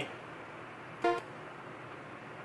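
A single short synth lead note, about a fifth of a second long, about a second in, over a low steady hiss. It is the note preview that LMMS's piano roll plays when a note is clicked or dragged.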